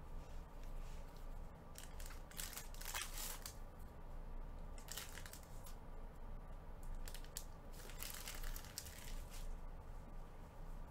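A plastic trading-card pack wrapper being torn open and crinkled in gloved hands, in several short crackly bursts: one about two seconds in, one around five seconds, and a longer run near the end.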